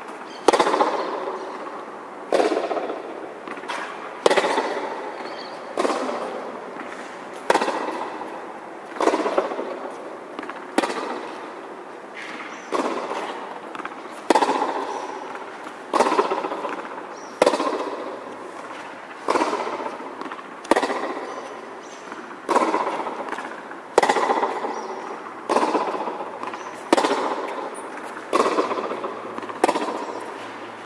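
Tennis ball struck by racket in a steady groundstroke rally, a sharp hit about every second and a half to two seconds. Each hit is followed by an echo that dies away under the court's metal roof.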